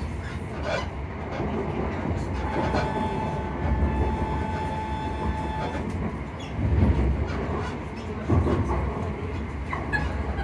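Passenger train carriage running on the rails, heard from inside: a steady low rumble with a few louder thumps about four, seven and eight and a half seconds in. A thin steady whine sounds over it from about three to six seconds in.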